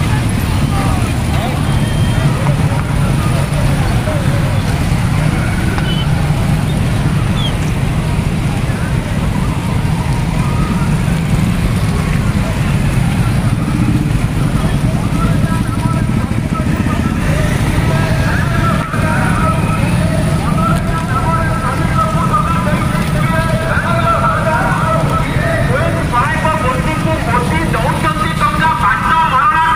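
Many motorcycle engines running together as a large rally rolls past, a steady dense rumble. Voices, shouting or chanting, rise over the engines in the second half.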